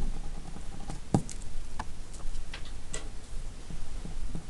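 Pen on paper: a few scattered ticks and light scratches as the nib touches down and writes, the sharpest click about a second in.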